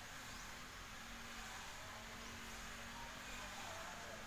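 Faint, steady background hiss with a low hum underneath and no distinct events.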